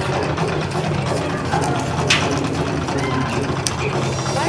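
A steady low mechanical hum, engine-like, with faint voices over it and a sharp click about two seconds in.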